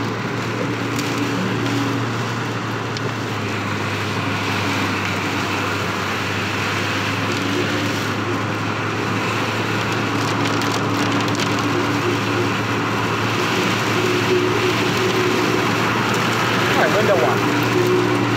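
Car interior while driving on a rain-soaked road: a steady low hum of engine and road, with the even hiss of tyres on wet pavement and rain on the car.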